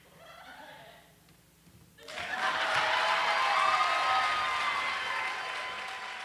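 Audience applause that breaks out suddenly about two seconds in, after a brief hush, then slowly fades.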